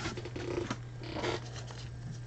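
Faint handling sounds: gloved hands and a plastic magnetic card holder rustling and clicking softly against the table, over a steady low hum.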